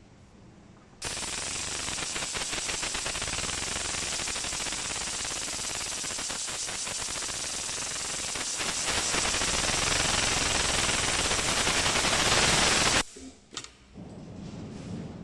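Richpeace tape-binding industrial sewing machine stitching binding tape onto the edge of a quilted pad at high speed, a fast steady run of needle strokes. It gets louder about two-thirds of the way through, stops suddenly near the end, and a few short clicks follow.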